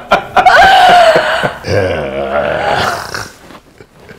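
People laughing: a long, drawn-out laugh, then a lower, throaty laugh about two seconds in.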